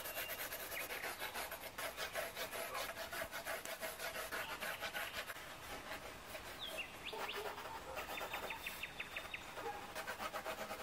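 Pencil sketching on watercolour paper: a steady run of short, scratchy strokes as the lead rubs across the page.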